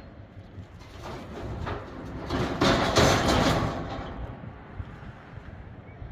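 A steel pickup truck bed scraping along a steel trailer deck as it is pushed off. A few light knocks come first, then a loud grinding slide about halfway through that fades within a couple of seconds.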